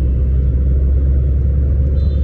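Steady low rumble inside the cabin of a moving car.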